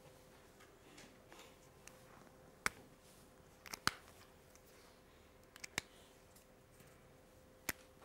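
About six sharp, short clicks and taps of a whiteboard marker against the board, some in close pairs, over a faint steady hum.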